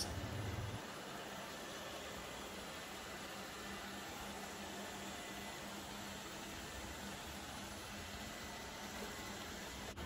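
ILIFE V5s Pro robot vacuum cleaner running on a tiled floor: a faint, steady hiss from its suction fan with a light hum, the low running sound the owner praises.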